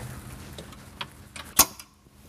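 Flat steel spanner tightening the locking nuts on a metal runner carriage: a few light metallic clicks, the loudest about one and a half seconds in.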